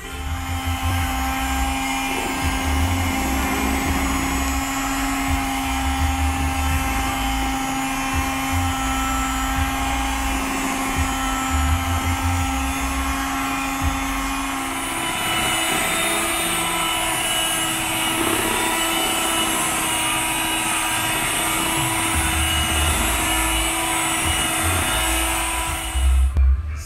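Proctor Silex electric hand mixer running steadily as its beaters work through banana bread batter, with occasional dull bumps. About halfway through, its pitch steps up as it is switched to a higher speed.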